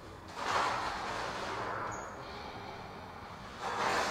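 A woman's slow, audible breath, picked up close by a clip-on lapel microphone: a long breath begins about half a second in and fades over about two seconds, and a second, shorter breath comes near the end. It is deep, paced breathing while holding a neck stretch.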